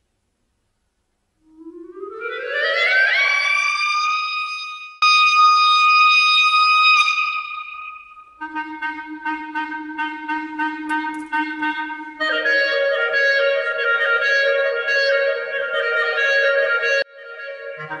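Solo clarinet music: a long upward glissando that settles on a held high note and jumps into a louder sustained tone. From about halfway the sound turns denser, with several steady pitches at once over a fast run of clicks, shifting twice.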